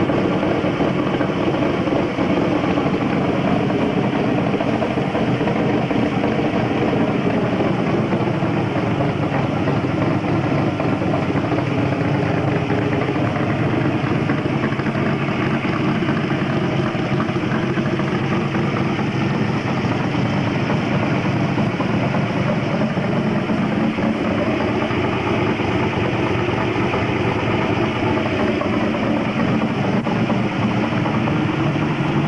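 Cobra replica's engine idling steadily and loudly through its side exhaust pipes.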